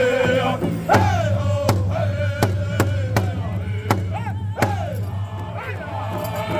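Powwow drum group singing a contest song in high-pitched voices over steady beats on one large shared hide drum, struck by all the singers together about every 0.7 s. The sung phrases slide down in pitch.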